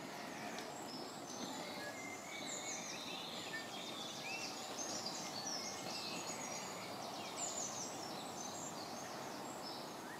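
Songbirds singing and chirping in the trees, many short calls and trills throughout, over a faint steady background hiss.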